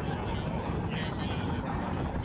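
Indistinct voices of people talking over a steady low rumble of aircraft noise.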